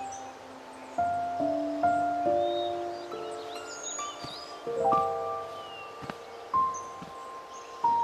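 Soft instrumental background music: a slow melody of held notes, each one entering with a light plucked attack. Faint bird chirps sound over it.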